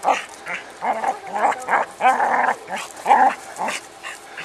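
Border collie barking and whining in short bursts, about eight in four seconds, with one longer call near the middle, as she worries at a rock she is herding.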